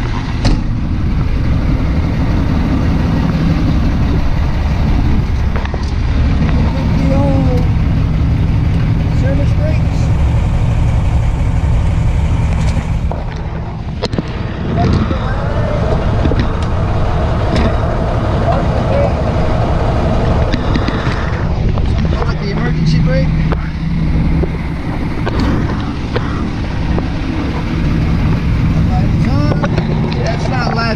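Diesel semi-truck engine idling steadily, with a few light knocks over it.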